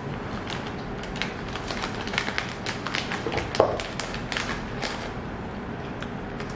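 A plastic snack packet crinkling and crisp potato sticks crunching as they are bitten and chewed: an irregular run of sharp crackles and clicks.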